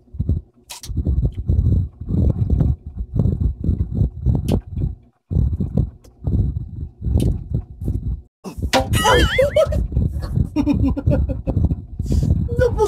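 Chewing of raw green mango close to the microphone, in steady strokes about two to three a second. About nine seconds in comes a high, wavering vocal sound from one of the eaters.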